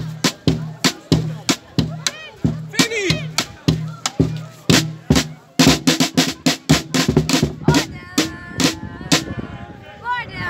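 A supporters' drum beaten in a steady rhythm, about three strikes a second, quickening into faster beats about halfway through, with shouting voices over it.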